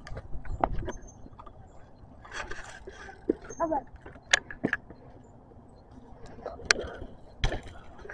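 Bicycles being ridden on pavement: a scatter of sharp clicks and knocks from the bikes, with faint voices now and then.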